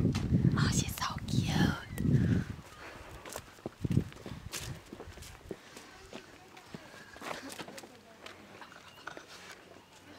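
A girl's voice and laughter close to the microphone, with bumps and rustle, for the first two and a half seconds. Then comes a quieter stretch with a few light knocks and footsteps.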